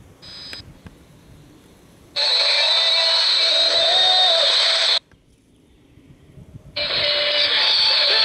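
Shortwave broadcast stations in the 31 m band heard through a JGC WE 055 world receiver's small speaker as it is tuned up in small digital steps. After faint hiss, a station with music comes in loudly about two seconds in and cuts off abruptly at five seconds as the tuning moves on. Another station cuts in near the end.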